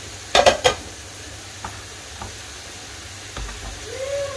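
A spoon stirring chopped mango and pineapple into custard in a plastic tub: a quick clatter of about three knocks just after the start, then a few soft taps.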